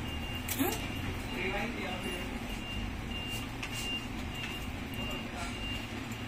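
A high electronic beep repeating evenly, about two and a half times a second, and stopping near the end, over a steady low rumble with faint voices.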